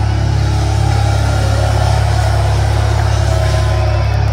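A death metal band's guitars and bass holding one low chord that rings out steadily after the drums stop, the sustained final chord at the end of a song.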